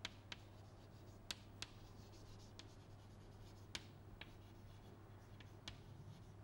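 Chalk writing on a blackboard: faint scratching with about half a dozen sharp taps as the letters are formed.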